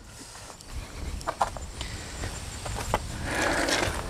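Footsteps and handheld-camera handling noise as someone walks on pavement, with a few sharp clicks. A short rustling comes near the end.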